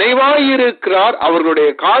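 A man preaching a sermon in Tamil, speaking continuously with one short pause about a second in. The voice sounds thin and narrow, like audio over a telephone line.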